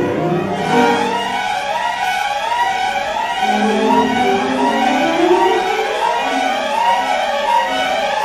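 String orchestra playing contemporary music made of many overlapping glissandi: bowed strings sliding up and down in pitch at once, in a dense web of gliding tones. The low strings drop out from about two seconds in, leaving mostly the upper voices sliding.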